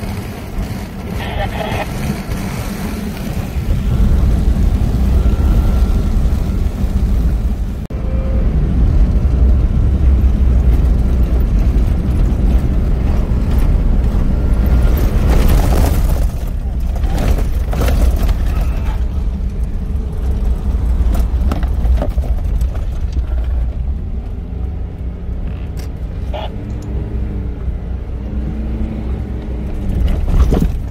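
Off-road vehicle driving over desert sand, heard from inside the cabin: a loud, steady low engine and tyre rumble that swells about four seconds in and eases off after about twenty seconds, with a few knocks and rattles around the middle.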